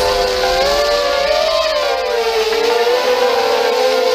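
HappyModel Crux3 toothpick quadcopter's small brushless motors whining, several close pitches drifting up and down together with the throttle.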